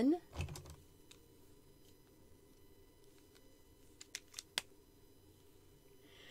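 Quiet room tone with a few light clicks and taps from art supplies being handled, the sharpest about four and a half seconds in.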